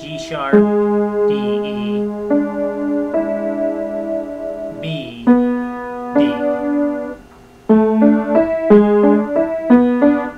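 Piano played slowly: a series of sustained notes and chords, changing every second or so, with a short break about seven seconds in.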